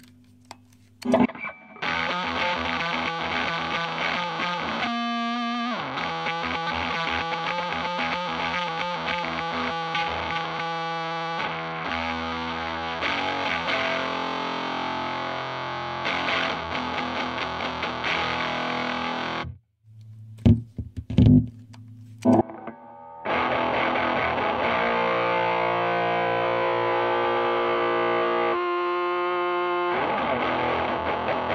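Distorted electric guitar played through an Arion Metal Master SMM-1 (a Boss HM-2 clone distortion pedal) and a valve amp, strumming chords and riffs. Playing breaks off at about twenty seconds, a few loud clicks follow, and playing resumes about three seconds later, louder than before.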